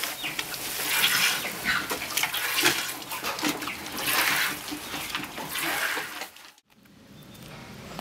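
Milk squirting from a goat's teats into a plastic bucket during hand-milking, a short hissing squirt roughly every half second to a second. The squirts stop about six and a half seconds in.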